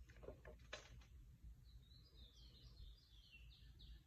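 Near silence. A few faint taps early on as stockinged feet step onto a glass bathroom scale, then from about halfway a faint bird song: a quick series of short falling chirps, about four or five a second.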